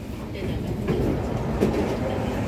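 Seoul Metro Line 3 subway train running through the tunnel, heard from inside the car: a steady low rumble of wheels on rail that grows louder about half a second in.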